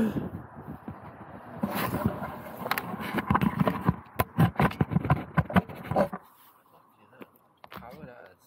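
Handling noise right on the camera's microphone: a dense run of knocks, clicks and rubbing as the camera is fitted to a mount on an RC car, stopping about six seconds in.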